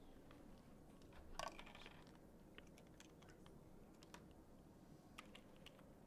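Faint plastic clicks and taps as a smart card is snapped onto a NeurOptics NPi-200 pupillometer, the loudest about a second and a half in; the click of the card seating is the sign that it is on.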